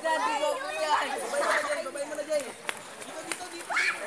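A group of young people chattering and calling to one another, with several voices overlapping. One voice rises sharply near the end.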